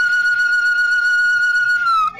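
Music: a flute-like wind instrument holds one long, steady high note that slides slightly down near the end as the melody moves on.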